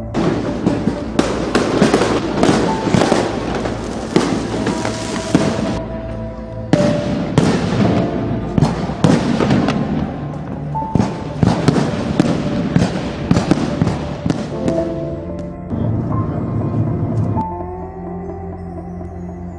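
Loud, dense crackling and popping over music with sustained tones. The crackling breaks off for about a second partway through and thins out near the end.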